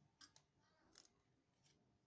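Near silence, with four faint, short clicks about a second and less apart as a pack of cylindrical battery cells joined by nickel strips and its wires are handled.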